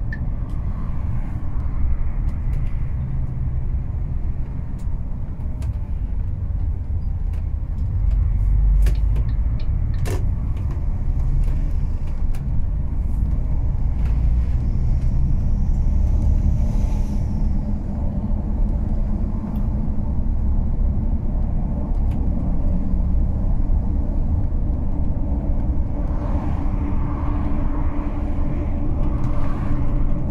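Steady low rumble of a road vehicle's engine and tyres, heard from inside the cab as it drives along. There are a few faint clicks around ten seconds in, and a steady engine hum becomes more distinct near the end.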